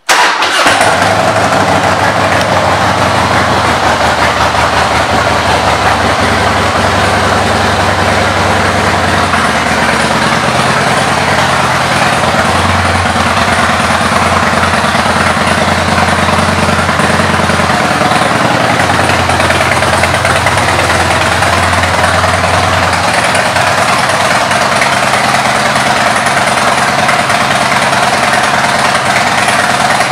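2003 Harley-Davidson Heritage Softail Classic's Twin Cam V-twin, fitted with aftermarket Python pipes, firing up right at the start and then idling steadily and loudly.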